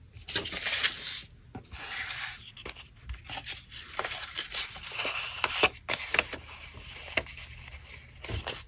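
Sheets and strips of paper being handled close to the microphone: rubbing and sliding against each other and the tabletop, with irregular rustles and small sharp ticks and taps.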